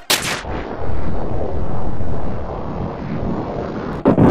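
Heavily distorted, overdriven audio effect: a brief blast at the start, then a loud, dense rumbling noise with the top end cut off, and a fresh blast right at the end.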